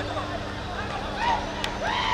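Footballers' shouts and calls on the pitch, several voices overlapping, over a steady low hum, with a single sharp click about one and a half seconds in.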